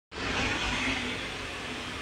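Steady background noise, a hiss over a low rumble, a little louder in the first second.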